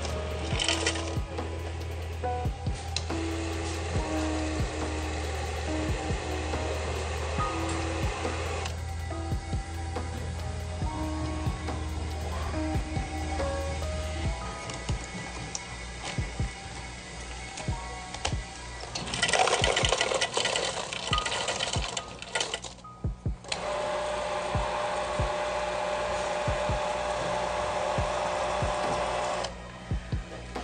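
Ice clinking and rattling in a plastic cup at a self-serve soda fountain, with the fountain pouring soft drink in long stretches in the second half, under background music.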